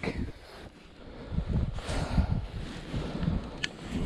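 Wind buffeting the microphone in irregular gusts, a low rumble, with one sharp tick near the end.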